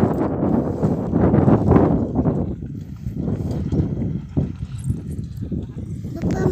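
Hoofsteps of a pair of bullocks pulling a seed drill across dry tilled soil, an irregular run of steps, louder in the first two and a half seconds.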